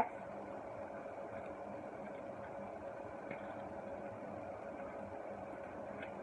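Steady, even background hum of a small room with a faint constant tone in it; nothing else stands out.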